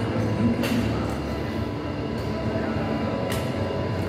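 Steady rumbling background noise of a busy gym, with two short knocks, one near the start and one near the end.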